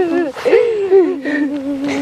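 A child's drawn-out crying wail, held on one wavering pitch that drops to a lower, steadier note about halfway through.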